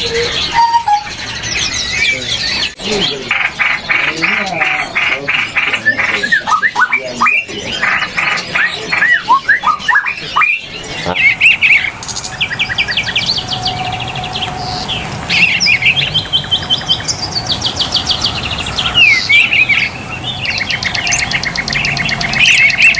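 Many songbirds chirping and trilling with fast repeated notes, and the birdsong changes character about halfway through.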